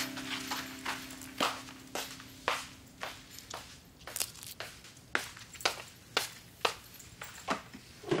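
A series of light, irregular clicks and taps, about two a second, heard faintly in a quiet room.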